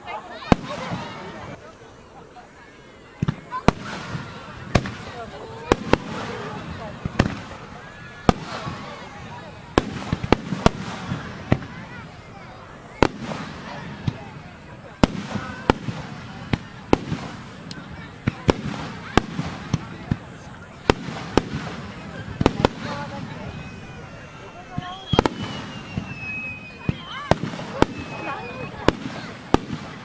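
Aerial firework shells bursting in an irregular string of sharp bangs, about one to two a second, heard from a distance with people talking close by.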